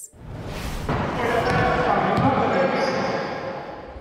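Indoor basketball game: ball bouncing and players' voices echoing in a sports hall, with a laugh about two seconds in.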